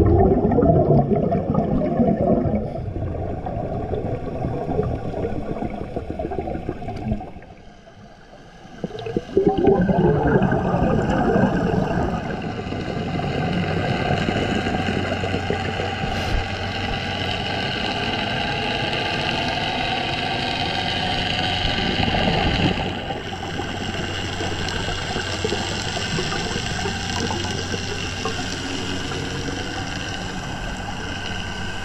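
Underwater sound of scuba diving: regulator breaths and gurgling bursts of exhaled bubbles, over a steady low hum. The sound drops away briefly about eight seconds in, then comes back with a loud rush of bubbles.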